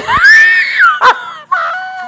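A woman laughing loudly in high-pitched shrieks. A long rising squeal is held for about a second, then after a short break a second long squeal is held and slowly falls in pitch.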